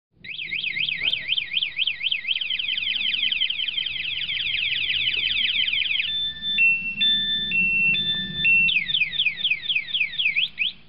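Electronic anti-theft alarm siren of an EW-66 mobility scooter sounding, the sign that the armed scooter has been touched. It cycles through rising and falling wails that speed up, then switches about six seconds in to a stepped three-note pattern, then goes back to fast sweeps near the end.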